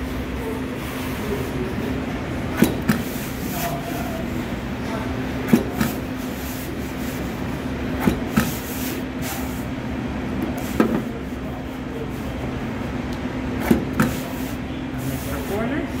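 Steady hum of bookbinding workshop machinery with a tone running under it. Pairs of sharp knocks come about every three seconds, five times over.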